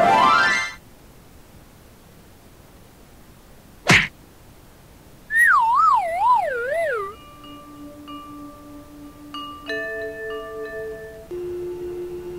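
Cartoon-style sound effects. A rising swoosh sounds at the very start, then a single sharp whack about four seconds in, then a wobbling whistle slides downward for about two seconds. Soft, sparse held music notes follow to the end.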